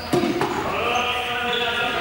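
Balls hitting the sports-hall floor, two sharp knocks near the start, followed by players' raised voices calling across the hall.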